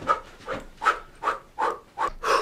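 Quick, rhythmic panting: short breathy huffs at an even pace, about two to three a second.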